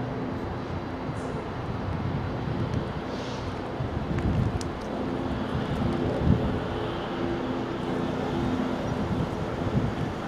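Steady outdoor rumble with wind on the microphone and a faint, intermittent low hum from distant traffic or machinery.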